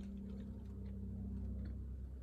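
Steady low hum inside a car cabin, with a few faint ticks over it.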